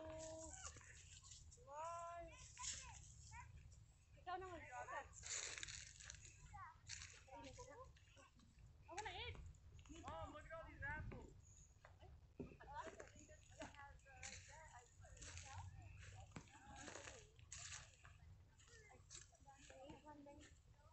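Faint voices talking in the background, some of them high-pitched, too quiet to make out words, over a steady low rumble.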